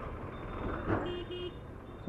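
Vehicle horn giving two quick short beeps about a second in, over the steady road, engine and wind noise of a motorcycle riding through town traffic.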